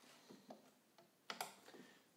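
Near silence with a few faint clicks and taps from hands handling fabric at a sewing machine that is not running. The sharpest click comes about a second and a half in.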